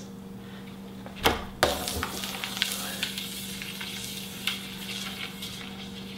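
Two quick slaps on a plastic flying disc a little over a second in, setting it spinning, then a steady hiss as the spinning disc's rim runs against a fingertip in a rim delay.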